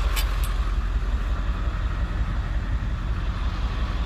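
Steady low rumble of the bus's engine idling while parked at the curb, with two light clicks just after the start.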